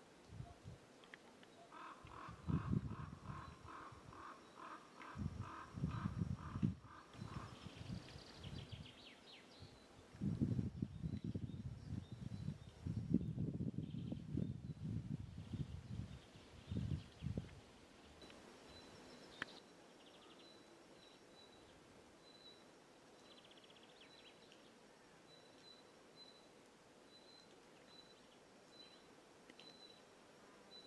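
Outdoor ambience with wind gusting on the microphone as low rumbles through the first half, the loudest sound. Birds call: a rapid, evenly repeated call for several seconds early on, then faint short high chirps repeating at a steady pace through the second half.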